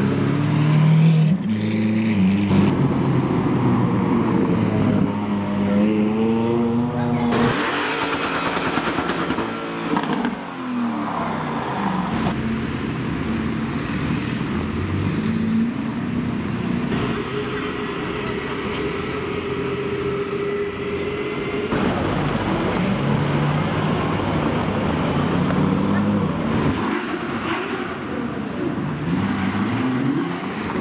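Supercar engines revving and accelerating past on a city street, heard in a run of short clips cut one after another. It opens with a Lamborghini Aventador Roadster's V12, its pitch rising and falling as it revs.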